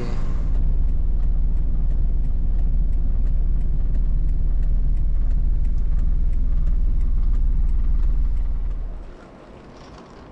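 Steady low rumble of a car heard from inside the cabin, fading away about nine seconds in.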